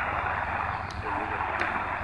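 Degen DE1103 shortwave receiver's speaker playing a weak, distant AM broadcast on 4010 kHz: mostly steady static hiss, cut off above about 3 kHz by the receiver's audio bandwidth, with faint programme audio barely above the noise. Two short clicks of static come about a second in and half a second later.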